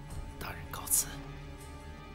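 A short breathy vocal sound from a person, ending in a sharp hiss about a second in, over soft background music.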